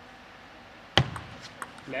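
Table tennis serve and opening strokes: a loud sharp knock about a second in, then a few lighter clicks of the celluloid ball on racket and table.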